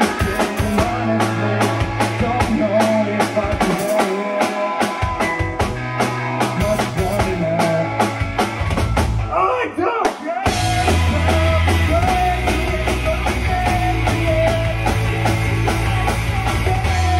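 Live rock band playing a song: drum kit keeping a steady beat under electric guitars, bass and a singer. About nine seconds in the drums drop out for a moment, then the full band crashes back in with heavier bass.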